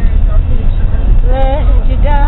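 Loud, steady low rumble of a moving bus, with a voice singing a short wavering phrase about a second and a half in.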